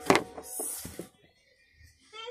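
A sharp knock or click, then a short rustle and a couple of small clicks as a small item is handled.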